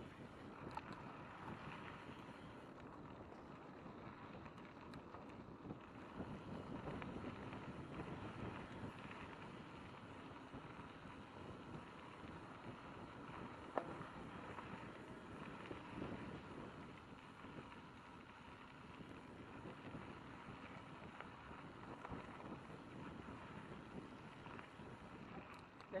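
Mountain bike rolling down a gravel flow trail: a steady rush of tyre and wind noise on the action-camera microphone, with one sharp click or knock about halfway through.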